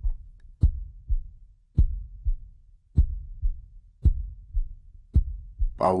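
Heartbeat sound effect: slow, even lub-dub beats, a strong low thump followed by a softer one, about one beat a second, five beats in all.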